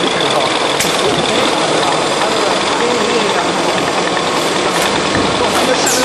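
Packaging-line machinery running steadily: conveyors and a drop-type case packer for 5-litre jugs make a continuous mechanical din, with a faint steady high whine over it.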